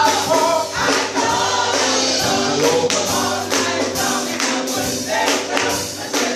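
A small gospel vocal group of women and a man singing together, with keyboard accompaniment and a steady rhythmic beat.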